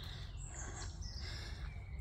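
Woodland songbirds singing: a few short, high whistles and chirps, some gliding in pitch, over a steady low rumble.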